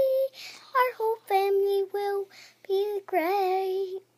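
A young girl singing an improvised tune in a high voice, about five notes, the last one held longest with a wavering pitch.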